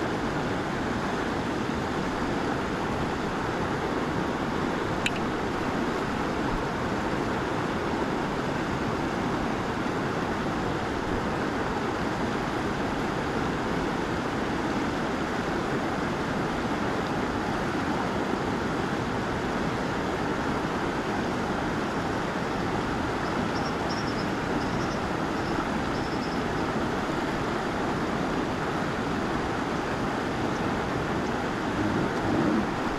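Steady rush of shallow river current flowing past, an even noise that does not change, with a single small click about five seconds in.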